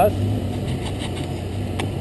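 KTM 450 quad's single-cylinder four-stroke engine idling steadily while stopped, with a single short click near the end.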